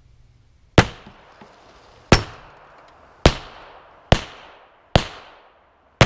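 Five 9mm pistol shots fired at a car door, roughly a second apart and coming a little quicker toward the end. Each is a sharp crack that trails off in a short echo.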